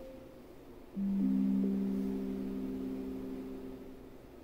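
Amazon Echo Show 8 smart display playing its chime through its built-in speaker: three soft notes that enter one after another, rising in pitch, about a second in, then ring together and slowly fade. The chime marks the end of setup, just before the device announces it is ready.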